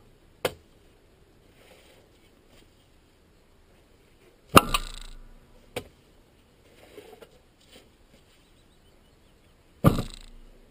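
Turf spade cutting sods from a peat bank: sharp strikes recurring in a steady working rhythm, one just after the start, a pair about a second apart in the middle, and another just before the end, the louder strikes trailing off over about half a second.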